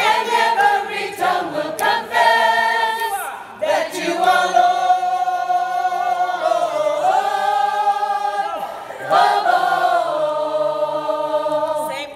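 Gospel choir singing long held chords, moving to a new chord every few seconds.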